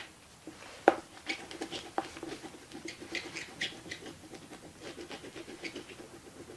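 Oil pastel being rubbed and scraped over paper in quick, repeated strokes, with a sharp click about a second in and another at two seconds.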